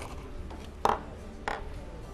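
A small craft blade cutting through a natural-fibre rope: two short, crisp snaps about two-thirds of a second apart.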